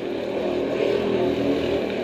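Go-kart engine running steadily, growing louder about half a second in.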